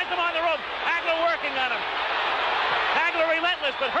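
A man's voice talking over a steady crowd din that swells for about a second in the middle.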